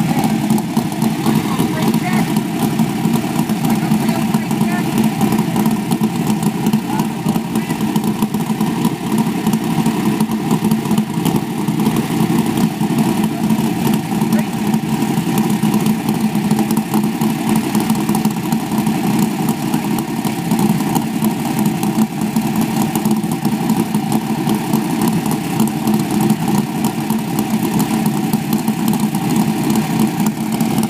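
Asphalt modified race car's V8 engine idling steadily and loudly.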